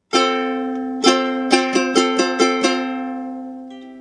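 Ukulele strumming an F chord with the little finger added on the C note: one strum, another about a second in, then a quick run of about six strums, after which the chord rings and fades, with a few new high notes near the end.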